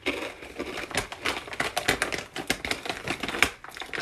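Crunching of a rolled spicy tortilla chip (a Taki) being chewed close to the microphone: an irregular run of crisp crackles.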